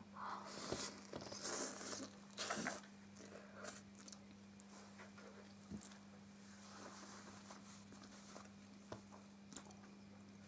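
Faint sounds of a person eating a mouthful of noodles: a few soft mouth noises in the first three seconds, then quiet chewing with occasional small clicks.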